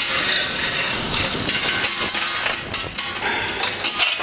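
Overhead garage door being raised by its hand chain, the chain rattling and clicking through the hoist while the door rises.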